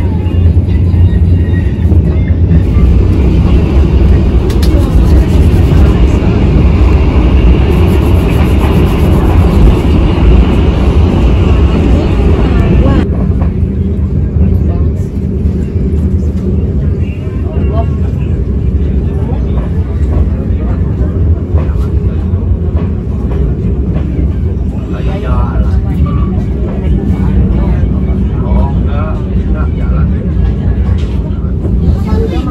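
Passenger train running, heard from inside the carriage: a loud, steady low rumble from the wheels on the rails and the moving coach. About halfway through, the higher hiss drops away suddenly, and faint voices come through near the end.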